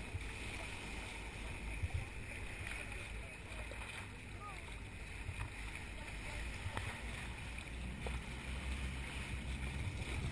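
Water rushing steadily along a moving boat's hull at the bow, with wind buffeting the microphone.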